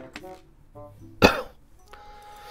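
A person coughs once, short and sharp, about a second in, over quiet background music.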